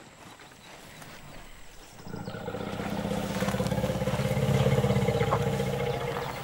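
African elephant rumbling: a low, pulsing call that starts about two seconds in, swells and then eases off.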